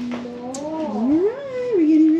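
A long wordless vocal call with no words, gliding slowly up and down in pitch without a break.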